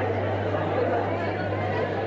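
Several people talking at once, indistinct chatter of a small crowd, over a steady low hum.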